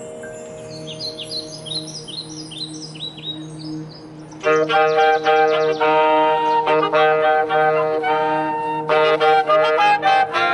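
A high school marching band in performance. Over a soft held low note, quick high bird-like chirps fall in pitch one after another. About four and a half seconds in, the full band of brass and woodwinds comes in loudly with held chords, and percussion hits come near the end.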